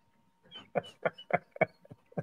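A person laughing in a run of short, quick bursts, about four a second, starting about half a second in.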